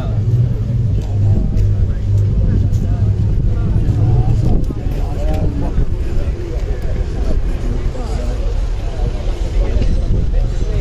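A car engine running slowly, with a steady low hum that fades about halfway through, under the chatter of people nearby.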